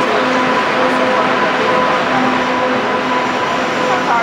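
Subway train moving through an underground station: a loud, steady rumble of wheels on rail, with a steady high whine and a lower hum that comes and goes.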